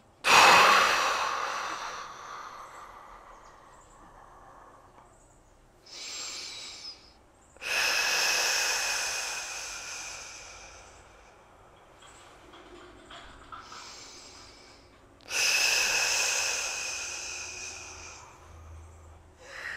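A woman breathing slowly and deeply and audibly during a core exercise. There are three long, strong breaths, each fading away over two to three seconds, with shorter, softer breaths between them. The long ones are the controlled exhales she times with each heel slide to brace the transverse abdominis.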